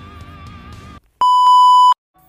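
Soft background music stops about halfway through, and after a moment a loud, steady electronic beep like a TV test tone sounds for under a second, then cuts off abruptly. It is an edited-in transition sound, going with a glitch and colour-bar effect.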